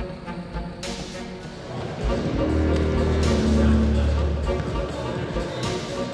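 Background music: a soundtrack score of sustained tones over a low bass, growing louder about two seconds in.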